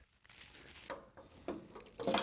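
Faint handling noise of the minicomputer cabinet's front door being worked loose: a few light clicks and knocks, one just under a second in and a sharper one about a second and a half in.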